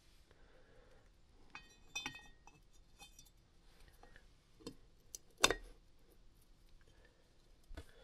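Faint metallic clinks and light taps of a ringed piston being worked down into the aluminium cylinder of a Kawasaki KX250F four-stroke engine. A few short ringing clinks come about two seconds in, and a single sharper click, the loudest sound, about five and a half seconds in.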